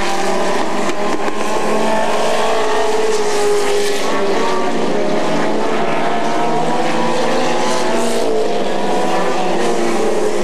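Stock car engines at racing speed around an asphalt oval, several at once, their pitch sliding up and down as the cars accelerate, lift and pass. The sound is steady and loud.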